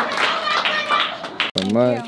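Audience clapping with voices over it, which cuts off suddenly about one and a half seconds in; a single voice follows briefly.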